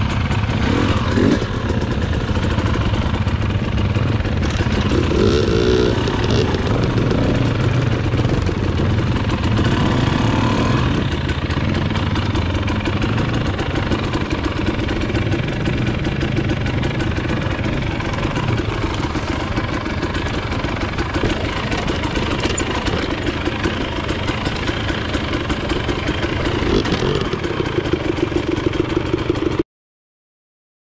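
Husqvarna TE 300i two-stroke enduro motorcycle engine being ridden along a rocky trail, revving up and down with the throttle. The sound cuts off suddenly just before the end.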